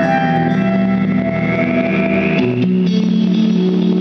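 Live rock band music dominated by a sustained, distorted guitar through effects, with a tone gliding slowly upward over the first two and a half seconds before the chord changes to new held low notes.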